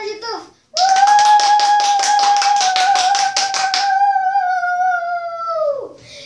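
A girl holding one long, high sung note for about five seconds, with quick hand claps, about six or seven a second, over its first three seconds; the note sags and drops away at the end.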